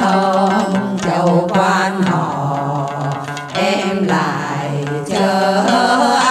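A women's choir singing a Vietnamese quan họ folk song together, with đàn nguyệt (moon lute) accompaniment. The melody is sung in phrases with short breaks between them.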